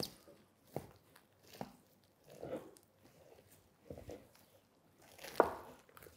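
Long knife cutting into a smoked beef hammer (bone-in beef shank): a handful of faint, short crunching cuts through the crusted bark and the tender meat, about one a second.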